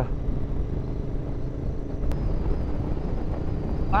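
Royal Enfield Interceptor 650's parallel-twin engine running at a steady cruise, under wind and road noise. A single faint click about halfway through.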